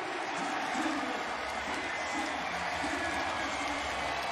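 Stadium crowd cheering and applauding after a touchdown: a steady wash of crowd noise with faint scattered voices in it.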